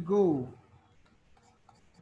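A man's voice says one short word at the start. Then come faint, scattered scratches and taps of a stylus writing and underlining on a writing tablet.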